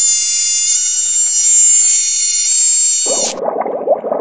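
A loud, steady, high-pitched tone with many overtones that starts abruptly and cuts off suddenly near the end, overlapped in the last second by a lower, rough gurgling sound.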